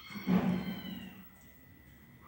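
A single animal call, about a second long, from the neighbours' animals, caught as unwanted background noise.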